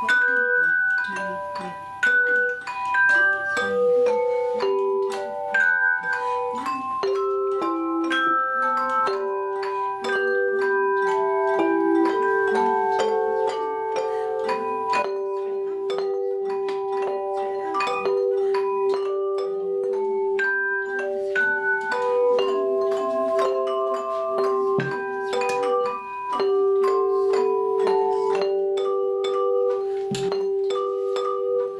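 Belleplates (flat aluminium hand-held bell plates) played by an ensemble, ringing a Christmas carol melody of struck, sustained notes that change every half-second or so over a long-held lower note.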